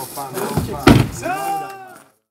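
A car door slammed shut once, loudly, about a second in, among men's voices talking.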